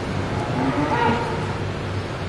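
A heifer mooing once, a call of under a second that peaks about a second in, over a steady low hum.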